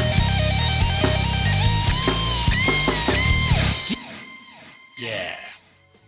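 Distorted electric-guitar lead through an AHM 5050 amp-simulator plugin with delay and reverb, playing held, bent notes with vibrato over a heavy low backing. Playback cuts off about four seconds in and a short echo tail dies away.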